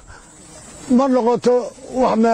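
A man speaking two short phrases. They come after a pause of nearly a second that holds only a soft hiss.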